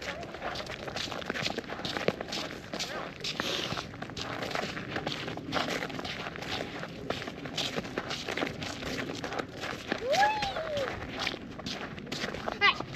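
Footsteps walking steadily along a snowy path, a continuous run of short irregular steps.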